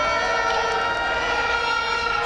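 A steady, held tone with several overtones, unchanging in pitch.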